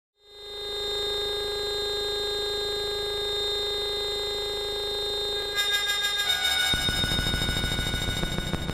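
Patchblocks synthesizer module playing a steady electronic drone that swells in during the first second. About five and a half seconds in, the drone breaks into a fast rippling pattern, and a low bass pulse joins near seven seconds.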